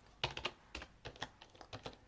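Computer keyboard keystrokes: a quick, irregular run of clicks as a line of text is typed, starting about a quarter second in.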